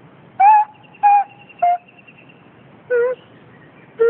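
Nose flute played in four short separate notes, each about a quarter second long, stepping down in pitch from the first to the last.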